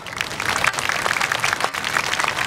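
Audience applauding: many hands clapping in a dense patter that starts suddenly.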